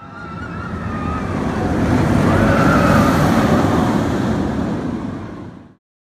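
Intro sound effect: a rushing, whoosh-like noise that swells over about three seconds, then fades and cuts off suddenly near the end.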